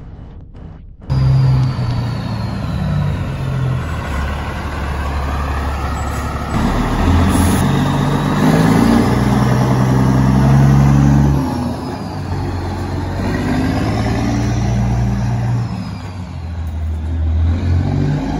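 Diesel semi-truck engines running as big rigs drive past, starting suddenly about a second in, the low engine note changing pitch in steps.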